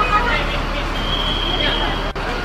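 Crowd of fans chattering and calling out beside a running Mercedes-Benz coach bus, with a steady low engine hum underneath. A thin, steady high tone sounds about halfway through and lasts nearly a second.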